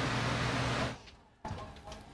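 Steady hum and hiss of kitchen fan noise for about the first second, then it cuts off abruptly to near silence with a faint click.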